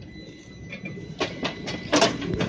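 Tram running on its rails, a faint steady whine at first, then a series of sharp clicks and knocks from a little over a second in.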